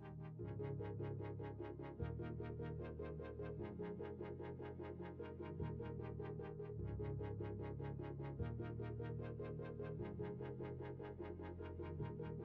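Electronic background music with a synthesizer: a steady pulsing beat of about four notes a second over a bass line that changes every second or two.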